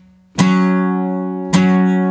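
Acoustic guitar strummed slowly with a pick, playing an F-sharp 5 power chord: two strums, the first about a third of a second in and the second about a second later, each left ringing.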